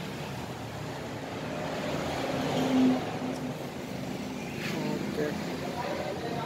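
Steady street traffic noise that swells about halfway through, as a vehicle goes by, then eases, with faint voices in the background.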